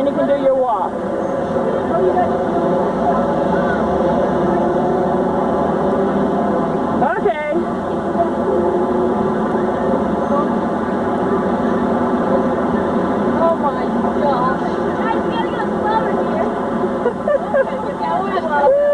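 Young people's voices chattering indistinctly over a steady drone, with a few louder voices breaking through about seven seconds in and again near the end.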